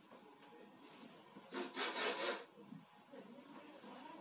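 Play parachute fabric rustling as it is gathered and handled on the floor: one short rustle of under a second, about halfway through.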